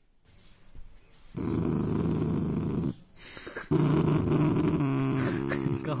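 Rottweiler puppy growling at having its mouth handled: two long low growls, the first about a second and a half long, the second longer and rising in pitch near the end.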